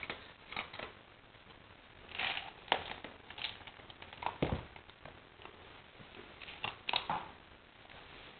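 Quiet scattered clicks, taps and rustles of an English Setter puppy taking a treat from a hand and shifting about on a rug, with a dull thump about four seconds in as it gets up.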